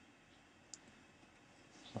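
Near silence: room tone, with one faint click about three-quarters of a second in, a stylus tapping a tablet screen.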